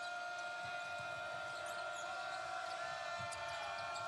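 Basketball game sound on a hardwood arena court: a ball dribbled under crowd noise, with one steady note held throughout that ends just after.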